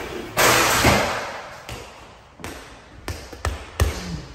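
Mini basketball hoop hit on a dunk attempt: a loud clattering burst from the rim and backboard, followed by a handful of sharp, irregularly spaced thuds from the ball and sneakers on the wooden floor.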